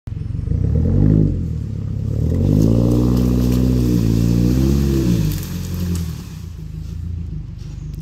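SUV engine revving under load as it drags a fallen tree limb on a tow strap: a short rev about a second in, then a longer pull that rises, holds and falls away about five seconds in, settling to a low idle.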